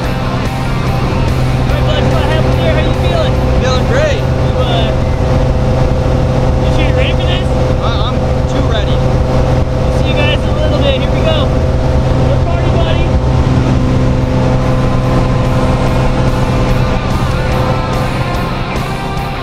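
Steady drone of a small single-engine plane's engine heard inside the cabin during the climb, with voices raised over it now and then.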